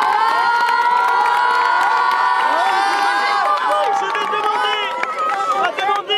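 A crowd of children cheering and shouting in long, high-pitched cries, with scattered claps; the cheering thins out about five seconds in.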